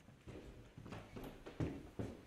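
Footsteps on a hard floor: a few uneven soft steps, the firmest about one and a half seconds in.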